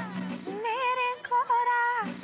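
Music from an old Bollywood film soundtrack: a woman's high singing voice holding wavering, vibrato notes from about half a second in.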